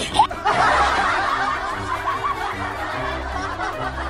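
Laughter sound effect, many voices snickering and chuckling together, starting about half a second in, over background music with a steady bass line.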